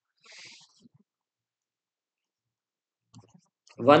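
A short, soft breath in through the mouth, then near silence until speech resumes near the end.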